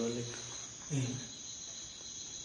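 A man's voice trails off at the end of a phrase, with a brief voiced sound about a second in. Under it, a steady high-pitched tone runs on in the background.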